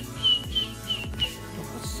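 Four short, high chirps about a third of a second apart in the first half, over background music.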